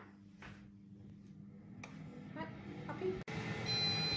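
Air fryer running after being started from its touch panel, a steady low hum from its fan. Near the end a steady high electronic beep sounds, the air fryer signalling that the cooking cycle is done.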